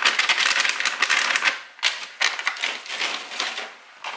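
Dry pastry-cream powder being shaken out of a paper sachet into a mixing bowl: a dense, rapid crackle of sachet paper and falling powder. It comes in two spells with a short break between them, and the second tails off near the end.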